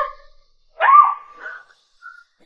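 A woman's voice crying out twice, short and high-pitched: she shouts 'get lost!' in her sleep and wakes with a startled cry.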